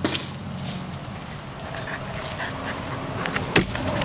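A dog panting as it moves about on a concrete floor, with scattered light clicks over a steady low hum and one sharp knock about three and a half seconds in.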